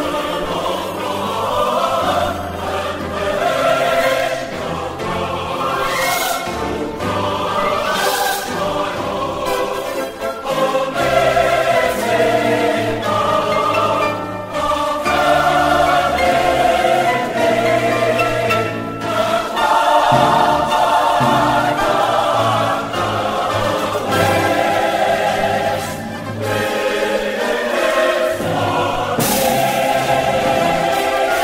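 A choir singing sacred music with instrumental accompaniment, in sustained full chords.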